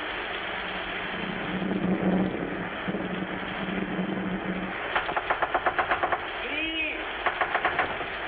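Night ambience on an old film soundtrack: a steady hiss, with insects chirping in rapid even pulses from about five seconds in, and once a short call that rises and falls in pitch near seven seconds.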